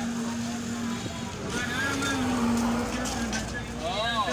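Busy street-market ambience: people's voices, one voice calling out in long held tones, over a steady wash of street traffic.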